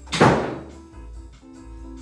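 A door shutting with a single heavy thunk about a quarter of a second in, over background music.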